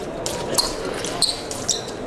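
Steel épée blades clinking together several times as two fencers engage, each contact a short sharp click with a brief high metallic ring, over footwork thuds on the piste and the murmur of a large hall.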